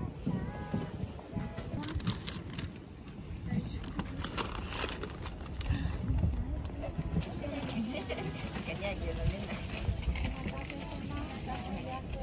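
Indistinct voices over a steady low outdoor rumble, with a few light clicks.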